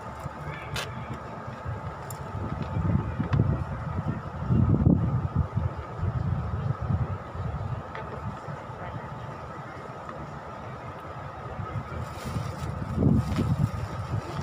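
Wind rumbling on the microphone in irregular gusts, strongest about five seconds in and again near the end.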